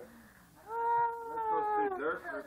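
A single long, drawn-out high-pitched vocal call, starting a little under a second in and held for over a second. Its pitch sinks slowly and drops away at the end.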